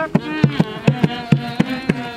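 Procession music: a drum struck about four to five times a second under a buzzing, wavering horn line.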